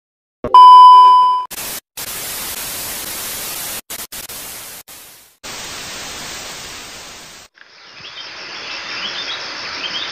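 A short, loud, steady test-tone beep sounds first, followed by television static hiss that cuts out briefly several times. About three-quarters of the way through, the static gives way to an outdoor background with birds chirping.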